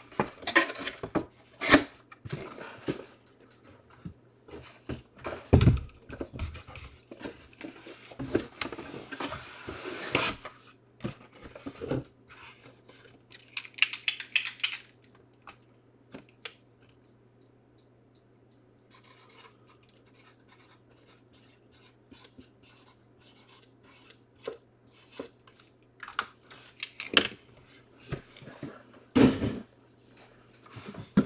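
Handling of boxes and packaging: irregular clicks, knocks, scraping and rustling, with a short hissing rasp about fourteen seconds in. There is a quieter lull in the middle and more knocks near the end, over a faint steady low hum.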